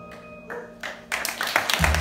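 A jazz trio of piano, upright bass and electric guitar letting its last held notes fade, then audience applause starting about a second in, with a low thump near the end.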